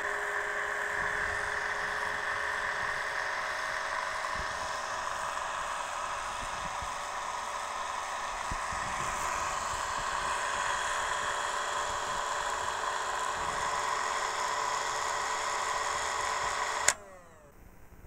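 APQS Turbo Bobbin Winder's electric motor running steadily, spinning a bobbin as thread winds onto it: an even whir with several steady tones. It cuts off abruptly near the end.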